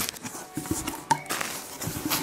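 Cardboard box being opened by hand: irregular scrapes, rustles and light knocks of cardboard flaps and paper packing.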